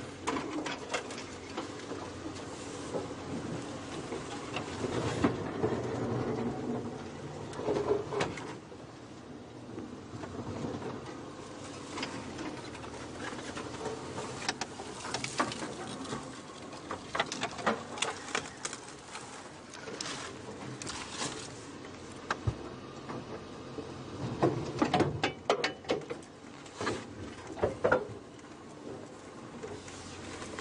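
Open safari vehicle driving slowly off-road through thicket: the engine runs steadily underneath while branches and brush knock, crack and scrape against the body, with bumps and rattles coming in irregular clusters.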